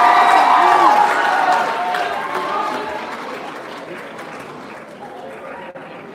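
Audience applauding, loudest at first and then dying away over about four seconds.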